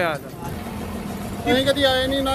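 Road traffic: vehicle engines running steadily in a pause between voices, before a voice comes back in about a second and a half in.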